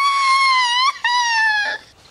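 A high-pitched, crying-like wail in falsetto: two long held notes, broken briefly about a second in, each sliding down a little at its end.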